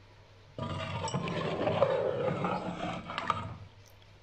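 A ladle stirring thick chicken curry in a metal pot: wet sloshing of the gravy with a few sharp clinks of the ladle on the pot. It starts about half a second in and stops shortly before the end.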